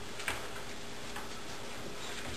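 Light clicks and taps of papers being handled on a meeting table, the sharpest about a quarter of a second in and a fainter one about a second in, over a steady faint room hum.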